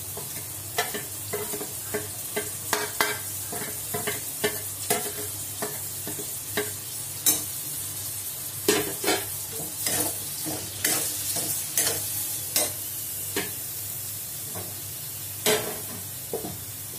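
Oil sizzling steadily under brinjal and plantain pieces frying in a metal kadai, with a long metal spatula clinking and scraping against the pan in irregular strokes as they are stirred together with freshly added spice powder.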